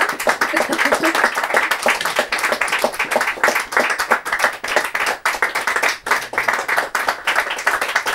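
Audience applauding, with dense, continuous hand-clapping.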